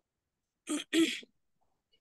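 A person clearing their throat: two short bursts close together, a little under a second in.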